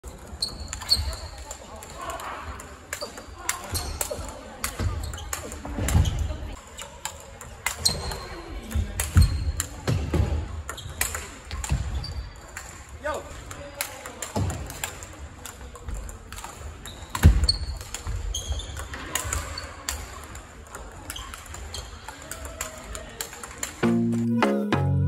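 Large-ball table tennis rally: the 44 mm plastic ball clicking off rubber bats and the table, several hits every few seconds, with the chatter of other players in a big hall behind.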